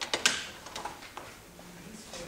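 Handling noises on a tabletop: a sharp knock just after the start, followed by several lighter clicks and taps.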